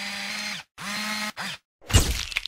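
A small electric motor whirring in three spurts, like a zoom mechanism spinning up and stopping: two of about half a second each, then a brief third. A loud impact hits near the end.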